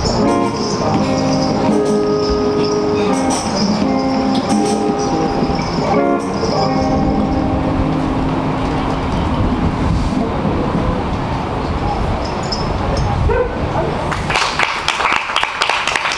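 Small live band playing: electric guitar chords over a looped riff, with congas, djembe and drum kit. The guitar tones fade out about halfway through, leaving a noisier drum wash, and the song ends with clapping starting about a second and a half before the end.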